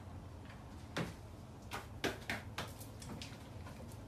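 Irregular sharp clicks and knocks from people moving about and handling things on a tiled floor, about half a dozen, loudest about a second in and again around two seconds in, over a steady low hum.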